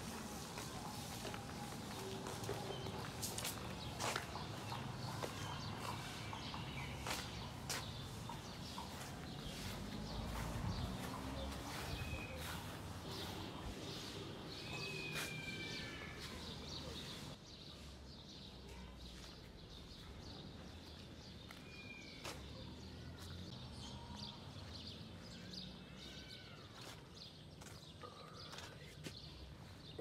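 Outdoor street ambience picked up by a phone's microphone while walking: footsteps and scattered clicks, with a few short bird chirps. The background turns abruptly quieter a little past halfway.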